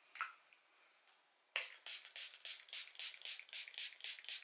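Obsession Moon Glow setting-spray pump bottle misting the face in quick repeated sprays, about four a second, starting about one and a half seconds in, each a short hiss. A brief faint sound comes just at the start.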